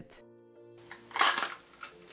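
A fresh red bell pepper giving one short, crisp crack about a second in as it is cut and split open; the crack is the sign that the pepper is really fresh. Soft background music plays underneath.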